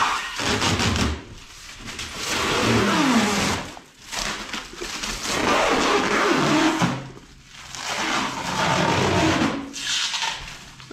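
Protective plastic film being peeled and pulled off a new refrigerator's panels, in about four long pulls of a couple of seconds each with short pauses between.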